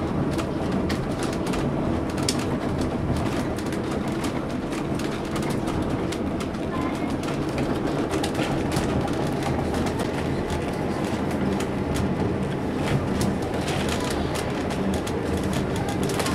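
A narrow-gauge passenger train rolling along the track: a steady rumble and hum with irregular clicks and knocks from the wheels over the rails.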